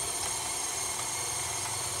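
KitchenAid stand mixer's motor running steadily, driving a meat grinder attachment as pork loin is fed through and ground.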